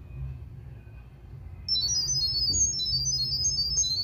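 Smartphone speaker sending the NEYE3C app's sound-wave pairing signal to a Wi-Fi light-bulb camera: a rapid string of short, high-pitched beeps hopping between pitches, starting a little under two seconds in. The tones carry the Wi-Fi network name and password to the camera during setup.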